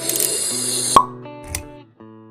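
Channel logo sting: sustained music notes under a whoosh that builds for about a second and ends in one sharp pop, after which the notes ring out and fade.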